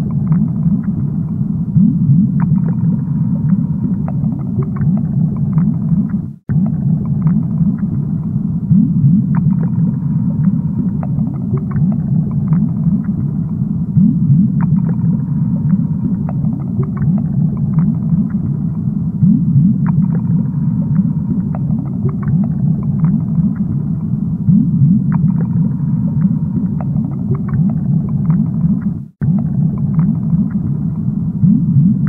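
Aquarium underwater ambience: a steady low rumble with bubbling and scattered light clicks. It cuts out abruptly and briefly twice, about six seconds in and just before the end.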